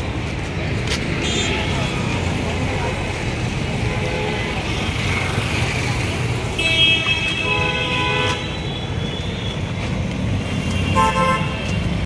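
Busy road traffic with vehicle horns honking over a steady low rumble. There is a short honk about a second in, a longer horn in the middle that is the loudest sound, and another short honk shortly before the end.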